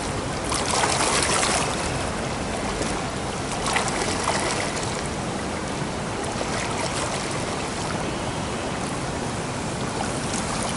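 Water splashing and churning from a swimmer's breaststroke kicks and arm pulls in a pool, a steady wash of water with louder splashes about a second in and near four seconds.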